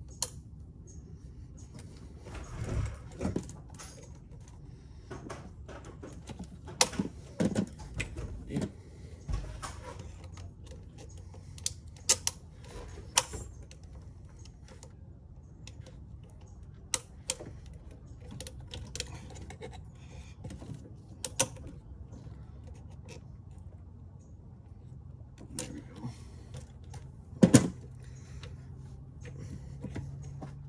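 Scattered clicks, knocks and light rattles of parts and hand tools being handled in a car engine bay while the air intake is refitted, with a sharper knock near the end.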